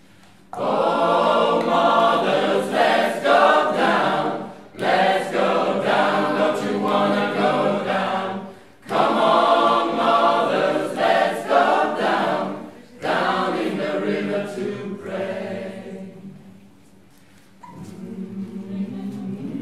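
Mixed choir singing a cappella in four phrases, each starting abruptly about every four seconds with a short break between, the last one fading away shortly before the end.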